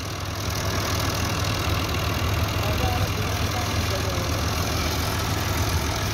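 Al-Ghazi tractor's diesel engine running steadily under load as it pulls by chain on a trolley stuck in soft ground, picking up slightly about half a second in.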